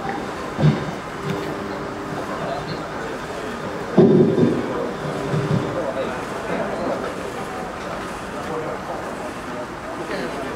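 Indistinct voices of people talking near the microphone over a steady outdoor background hum. A louder voice, like a call or shout, comes about four seconds in.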